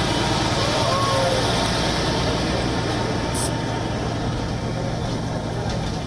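A heavy truck running along a road: a steady low engine drone under road and wind noise. Faint voices show briefly about a second in.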